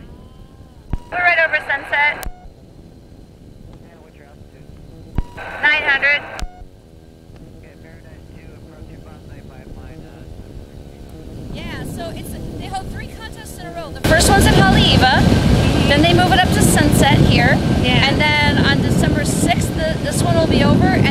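Microlight trike's engine and propeller running in flight, heard low with wind, broken by two short voice sounds early on. About 14 seconds in the noise jumps suddenly much louder and stays loud, with more voice sounds mixed in.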